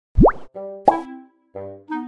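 Cartoon-style sound effects and a short musical jingle: a quick upward-sliding pop at the very start, then two brief groups of musical notes with a sharp click just before the one-second mark.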